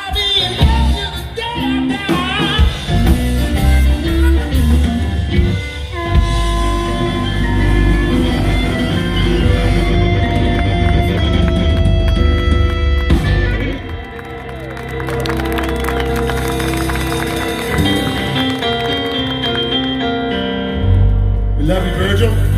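Live rock band playing through PA speakers: drum kit, electric guitars and bass. The volume dips briefly about two-thirds of the way through, then the music carries on.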